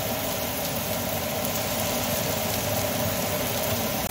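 Diced onion and garlic sizzling in oil in a stainless Instant Pot insert as they are stirred with a wooden spoon, over a steady mechanical hum.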